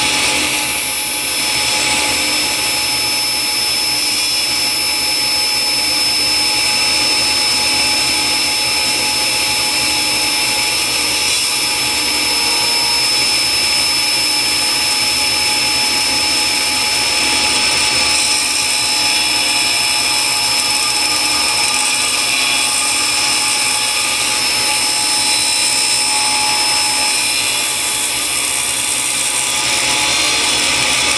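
Table saw running steadily, its blade trimming a thin slice, about a blade's width, off the edge of a wooden piece. A steady high whine sits over the noise of the blade.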